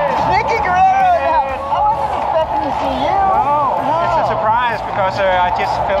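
Overlapping voices of people greeting and exclaiming, over crowd chatter.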